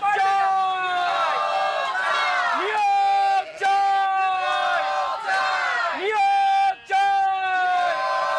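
Protest slogans shouted and chanted by a crowd in Bengali, a phrase about every two to three seconds, each rising into a long, high, held shout.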